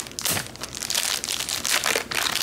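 Clear plastic wrapping around a stack of prop banknotes crinkling and crackling as it is pulled and torn open by hand.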